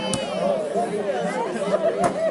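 Crowd of people chattering, with one sharp axe blow into the tree trunk shortly after the start.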